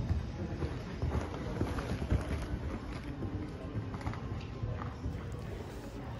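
A pony's hooves cantering on a sand arena surface: uneven low thuds as it goes round the course.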